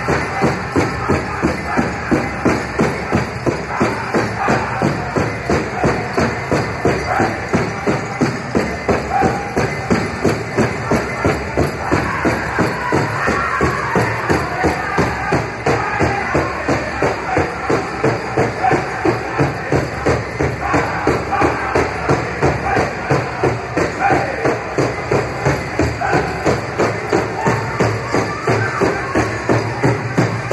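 Powwow drum group playing a grass dance song: a steady, even drumbeat of roughly two to three strokes a second on the big drum, with the singers' voices over it.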